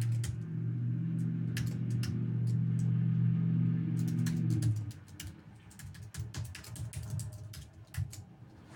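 Computer keyboard typing, with quick key clicks throughout and most plainly in the second half. For the first five seconds a low, steady hum sits under the keys, then stops.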